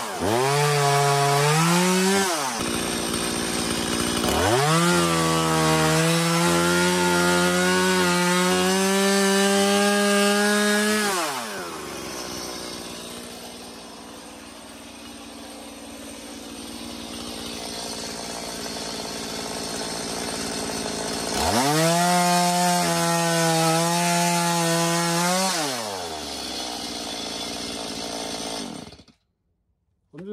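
Stihl two-stroke chainsaw cutting through a dry driftwood log, held at full throttle in three long bursts. Between the bursts the engine falls back, with a quieter stretch of about ten seconds in the middle. The sound cuts off abruptly about a second before the end.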